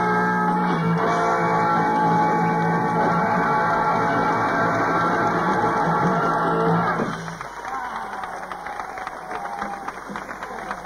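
A rock band playing live with electric guitars, holding one long chord that cuts off about seven seconds in. The audience then cheers and claps.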